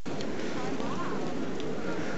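Steady murmur of a large crowd talking, with faint scattered voices but no single one standing out.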